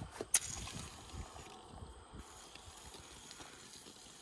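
Faint spluttering of aerosol shaving cream being sprayed onto a cloth car seat, with one sharp click about a third of a second in.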